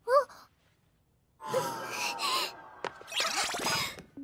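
A young female anime voice's short, sharp gasp of surprise with a rising pitch, followed after a second of quiet by about two and a half seconds of dense, noisy sound with gliding tones.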